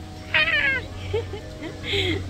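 A woman's short, high-pitched squealing laugh about half a second in, followed by a few faint, short voice sounds.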